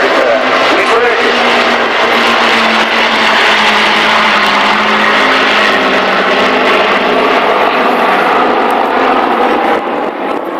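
Avro Lancaster bombers' four-engined Rolls-Royce Merlin V12 drone as they fly past overhead, loud and steady, the engine note sinking slightly in pitch around the middle.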